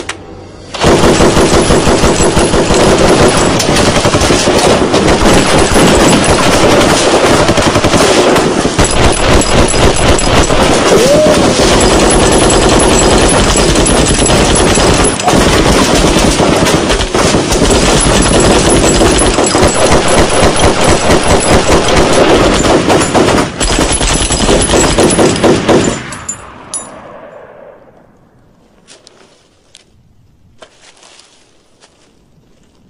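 Sustained automatic gunfire in rapid, continuous bursts, starting about a second in and going on for some 25 seconds before it stops and dies away.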